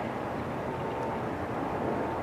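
Steady city street noise with traffic, picked up by an outdoor microphone. A faint thin steady tone comes and goes in it.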